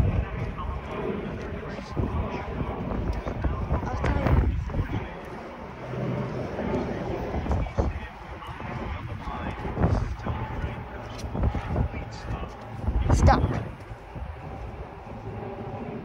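Wind rumbling on a phone microphone while people walk along a station platform, with scattered footsteps and a louder gust about 13 seconds in.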